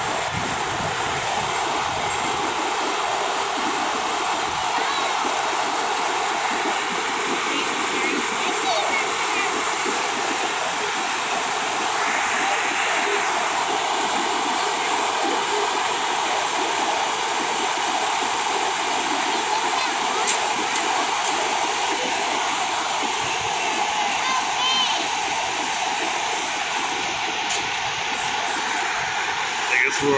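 Whitewater river rapids rushing steadily over rocks, a constant, even roar of water.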